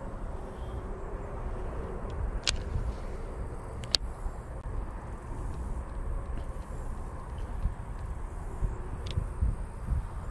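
Wind buffeting the microphone, an uneven low rumble, with two sharp clicks in the first half.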